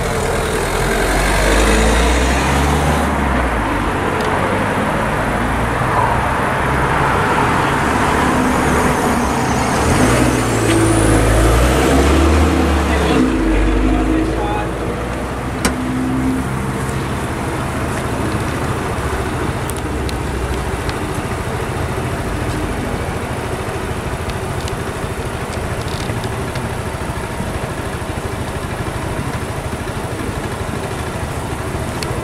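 Road vehicles' engines at a closed level crossing, with a car passing close by. A rumble with a bending pitch is loudest over roughly the first dozen seconds, then gives way to a steadier, lower hum of waiting traffic.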